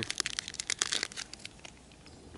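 A hot chocolate sachet being crinkled and torn open by hand: a dense run of sharp crackles that thins out over the last half second.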